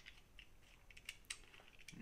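A few faint, small plastic clicks and handling noises as the cap is worked back onto a tube of super glue.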